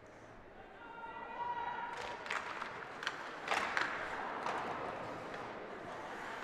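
Ice hockey play resuming after a faceoff in an indoor rink: skates scraping the ice and sticks knocking against the puck and boards, several sharp knocks in the second half, over the low noise of the crowd. A drawn-out call from a voice comes about a second in.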